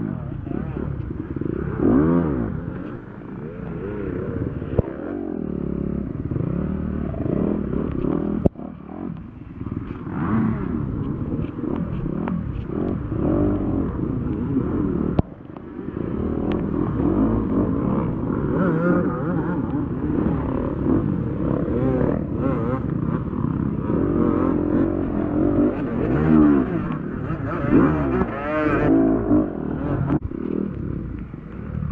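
Dirt bike engine revving up and down continuously under hard riding, its pitch rising and falling with the throttle. The level drops off sharply for a moment about eight and fifteen seconds in.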